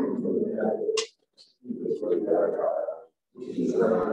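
An indistinct, low voice in three stretches of about a second each, with no words that can be made out.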